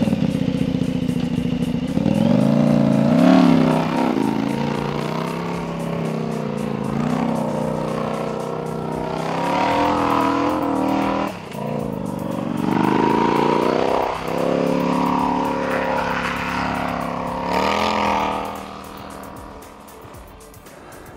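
Custom snow bike's 950 cc KTM V-twin engine running and revving, its pitch rising and falling again and again, fading away near the end.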